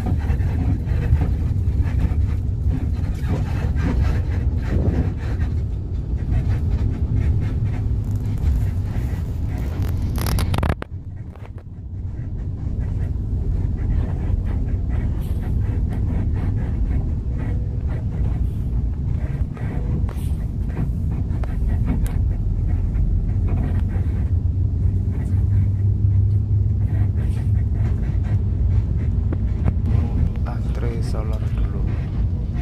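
Steady low rumble of a coach's engine and road noise, heard from inside the cabin while the bus drives. About eleven seconds in the sound suddenly drops away for a moment, then builds back to the same rumble.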